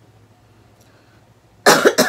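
A woman coughs hard into her fist near the end, one cough and the start of a second. She puts the cough down to her body going from hot weather to sudden cold.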